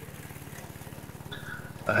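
The engine of a Vigorun VTC550-90 remote-control tracked mower, running steadily with an even low pulse as the mower drives along. Voice-over speech starts right at the end.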